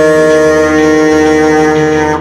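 Saxophone holding one long, steady, loud note.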